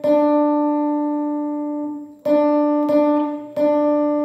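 Electric guitar picking single notes on one string, each left to ring: one long note, then three more about two-thirds of a second apart. It is one string's part of a chord riff played a note at a time, the layer that is overdubbed string by string to build a bright, jangly rhythm part.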